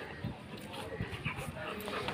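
Yellow Labrador making short vocal sounds while mouthing a rubber slipper, with soft knocks and scuffs scattered through.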